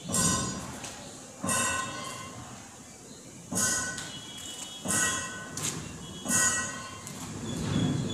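A series of five sharp knocks about one to two seconds apart, each ringing briefly before dying away.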